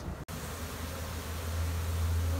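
A honeybee swarm buzzing as a steady low hum, after a brief cut-out in the sound just after the start.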